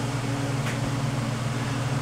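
Steady low machine hum made of a few even tones, like a fan or motor running.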